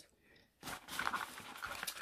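Soft rustling and handling noise of small toiletry items being picked up from a pouch, starting about half a second in after a brief silence.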